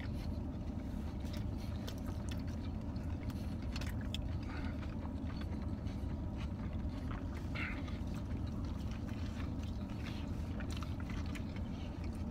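Steady low hum of a car idling, heard from inside the cabin, with faint scattered clicks and chewing sounds.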